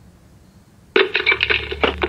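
Telephone hang-up sound effect heard through a handset: after about a second of quiet, a harsh, rapidly pulsing buzz lasting about a second. It signals that the other party has hung up.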